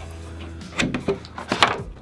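Unboxing handling noise: a clear plastic cover lifted off a white cardboard box tray, with light rustles, scrapes and a few sharp taps from about the middle on, over a low hum.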